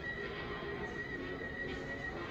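Soundtrack of an old black-and-white sci-fi movie trailer playing over cinema speakers: music with a steady high tone.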